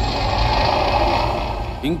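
Low, steady rumbling noise slowly fading away, the dying tail of a dramatic boom sound effect in a film soundtrack. A man's voice starts just before the end.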